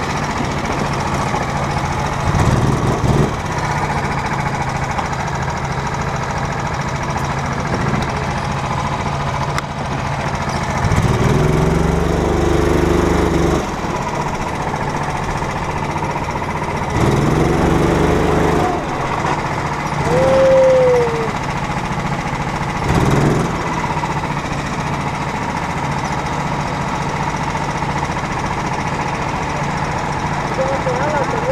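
Go-kart engine heard from the driver's seat, running at a low, steady note and rising in pitch under throttle several times, about 2, 11, 17 and 23 seconds in.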